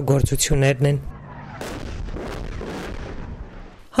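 Combat sounds of gunfire and explosions: a sharp blast about a second and a half in, followed by a rumbling echo and a few more cracks of fire.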